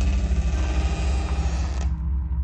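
Suspense film soundtrack: a deep rumbling drone with a faint pulse, under a hissing noise swell that cuts off near the end.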